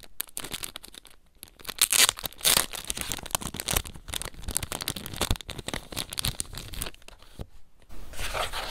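Clear plastic sticker packet crinkling and crackling as paper stickers are handled and pulled out of it. The crinkles come in quick, irregular bursts and are loudest about two seconds in.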